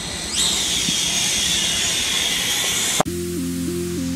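A toy quadcopter's small motors whine up sharply and hold a steady high whine with propeller hiss. About three seconds in this stops abruptly and electronic music with a stepping melody takes over.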